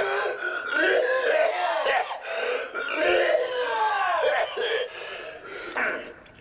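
A man's wordless, high-pitched giggling and wavering vocal noises, dying down near the end.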